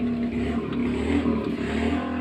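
A steady low motor drone with a held hum, slightly wavering in pitch.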